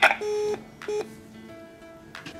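Electronic door intercom: a click, then two beeps, a longer one and then a short one.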